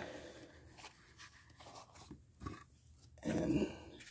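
Faint rustling and scraping of cardboard baseball cards as a thick stack is lifted out of its cardboard vending box and handled, with a brief louder rustle about three seconds in.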